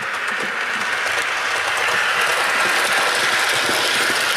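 OO gauge model diesel locomotive and coaches running fast along the track: a steady mechanical whirr with light wheel clicking, growing louder as the train approaches over curved points.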